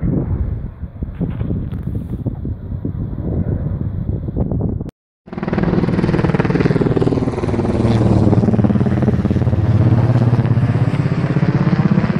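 Firefighting helicopter with a slung water bucket flying close overhead: a steady, fast rotor beat with engine whine, growing louder after a sudden cut about five seconds in. Before the cut there is a rougher rumble with gusts of wind on the microphone.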